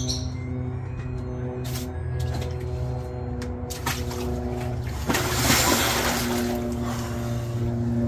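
Background music with steady held notes. About five seconds in, a burst of water sloshing and splashing as a person lowers himself into a portable ice-bath tub.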